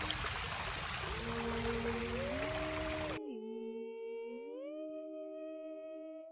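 Fountain water splashing, which cuts off suddenly about three seconds in, under layered a capella female singing of long held harmony notes.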